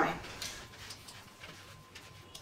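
Quiet room tone with a few faint, light clicks and taps.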